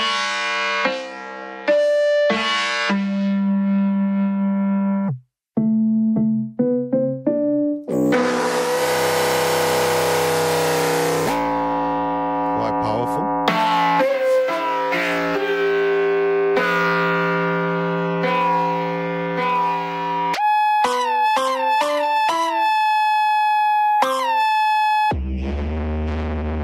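Keyboard notes played through the BeepStreet Combustor resonator effect while its presets are changed: a run of pitched, resonant tones, some buzzy and distorted, others whose pitch glides down as each note starts. There is a brief gap about five seconds in, and a deep low tone comes in near the end.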